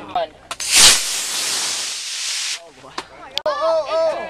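Model rocket motor igniting with a sudden burst less than a second in, then a steady hiss of thrust for nearly two seconds that cuts off suddenly at burnout.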